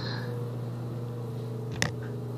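Steady low background hum with one short sharp click near the end.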